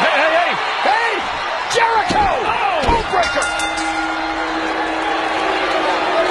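Voices crying out in rising-and-falling calls, with three sharp thuds between about two and three seconds in. About halfway through, a steady held tone comes in over a noisy background.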